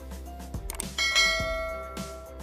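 A bright bell chime sound effect struck about a second in, ringing and slowly fading, over background music.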